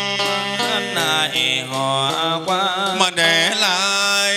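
Vietnamese funeral band (nhạc hiếu) music: a slow melody with heavy wavering vibrato and ornaments over steady sustained low notes.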